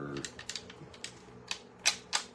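Plastic backing sheet of a rub-on transfer being peeled off a painted tray, giving a series of short sharp clicks and crackles, about half a dozen, the loudest near the end.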